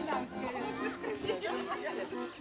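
Several people talking at once: overlapping chatter of a group.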